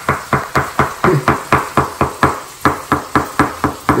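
A cleaver chopping hot-dog sausages into slices on a wooden cutting board, the blade knocking the board in a quick, even rhythm of about five chops a second.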